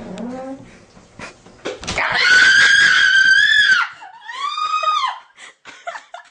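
A person screaming: one long, high-pitched scream of nearly two seconds starting about two seconds in, then a shorter one that rises and falls.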